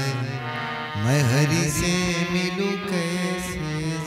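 Harmonium sustaining steady notes and chords, with a male voice singing a wavering, ornamented run without clear words about a second in, part of a bhajan in raag Bhairavi.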